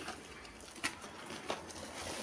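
Faint rustling of a plastic bag being handled, with two sharp crinkles a little over half a second apart.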